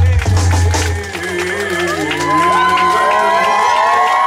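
Live rock band in a club finishing a song: the bass-heavy band sound cuts out about a second in, and a crowd cheering and whooping with many overlapping shouts follows.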